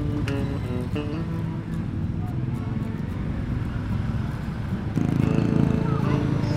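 Background music over the steady running of a Honda Beat 110 scooter's fuel-injected single-cylinder engine and road noise, which grows louder about five seconds in.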